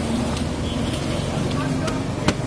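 Outdoor street background of people talking and traffic, with a couple of light taps from a wooden stick stirring a spice mix in a plastic mug.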